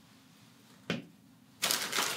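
A single light tap about a second in, then the loud crinkling rustle of a clear plastic toiletry bag being handled.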